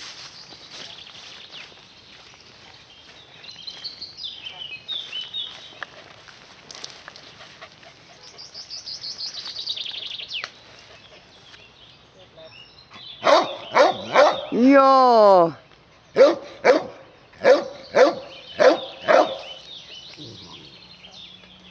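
A dog barking in the second half: a run of about eight loud, short barks, with one longer call among them that falls in pitch.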